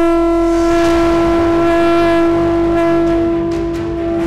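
A single long, steady horn-like note, rich in overtones and held at one pitch, fading near the end.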